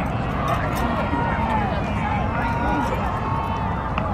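Steady murmur of a ballpark crowd, with a few faint, drawn-out voices calling out.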